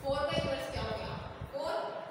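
A woman speaking as she lectures, with a few low knocks under her voice about half a second in.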